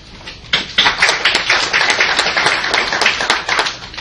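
Audience applauding: a burst of many hands clapping that starts about half a second in and dies away near the end.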